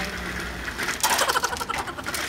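Wire metal shopping cart rattling as it is rolled, then a loud metal clatter about a second in as it is pushed into a row of nested carts.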